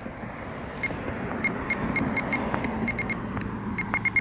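XP Deus MI-6 pinpointer beeping in pulse mode. Short high beeps start sparsely about a second in and come faster near the end, a sign that the probe is closing on a buried metal target. Under the beeps runs a steady rushing noise.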